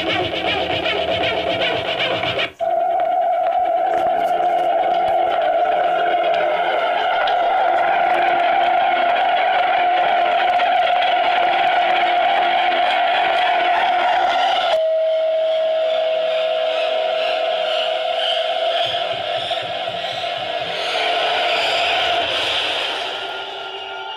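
Small portable speaker, cabled to a laptop, playing audio clips, mostly a steady droning tone. It cuts abruptly to a new sound about two and a half seconds in and again about fifteen seconds in.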